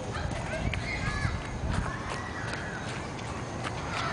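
Toddler's footsteps crunching and clicking on wood-chip playground mulch, with several short high-pitched rising-and-falling chirps over a low rumble of wind on the microphone.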